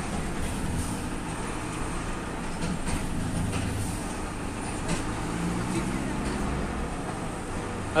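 Truck engine running steadily at low speed, heard inside the cab along with road noise.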